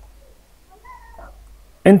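A faint animal call in the background: a short wavering cry about a second in, over a low steady hum. A man's voice starts right at the end.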